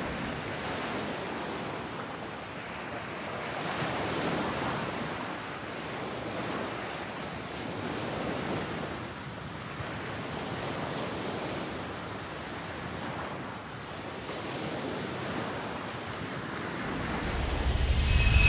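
Ocean surf: waves washing in, the rush rising and falling every few seconds.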